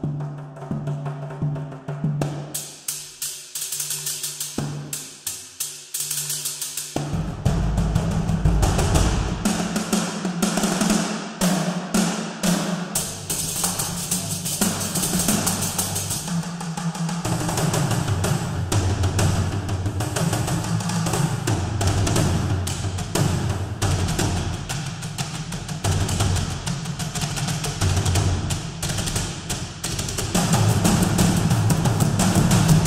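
Sampled frame drum ensemble from the Soundpaint Epic Frame Drums library ('Main Master All' patch), played from a keyboard. It opens with a few separate hits, then about seven seconds in it breaks into a dense, fast drumming rhythm with deep low drums under it.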